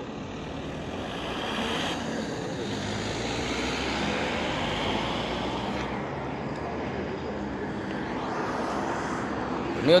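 Steady rushing noise of outdoor traffic, swelling over the first few seconds like a vehicle passing, then holding.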